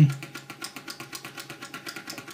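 Small geared electric motor driving a motorised arm through a relay controller, with a rapid, even ticking of about ten ticks a second.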